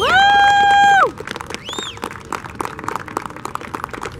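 A loud, high cheering 'woo' from one person, sweeping up and held for about a second before dropping off, then a short high whoop and scattered hand clapping.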